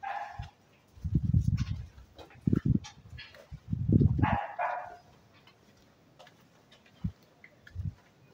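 A small dog barks a few times: short, sharp calls near the start and again about four seconds in. Louder bursts of low rumble come in between.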